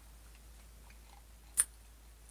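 Near silence: quiet room tone, broken once, about one and a half seconds in, by a single short click.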